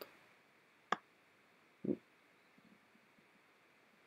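Computer mouse clicking twice as a clip is dragged and dropped, over quiet room tone: a sharp click about a second in, then a duller, softer click about a second later.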